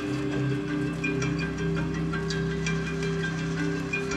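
Music: slow, held low notes with light struck notes scattered over them.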